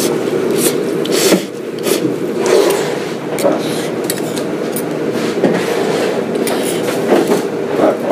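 Okonomiyaki-shop background noise: a steady rush with frequent short scrapes and clicks of utensils and dishes.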